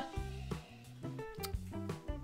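Quiet instrumental background music with a stepping bass line and short, separate notes above it.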